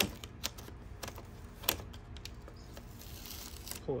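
Fingers pressing a vinyl overlay down onto a raised grille letter, making scattered light clicks and taps. Near the end comes a soft hiss as the transfer tape is peeled off the applied vinyl.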